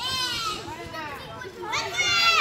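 Children's voices at play: high-pitched shouts and squeals, loudest in the first half-second and again near the end, over a background of chatter.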